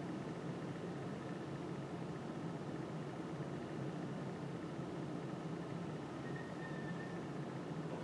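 Steady room noise of a classroom: an even low hum and hiss, like ventilation, with a faint thin high tone lasting about a second around six seconds in.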